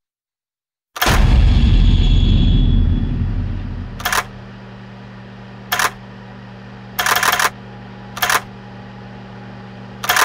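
Trailer sound design: a loud low boom about a second in that fades away over a few seconds, followed by a steady low hum broken by four short, sharp bursts of crackling noise.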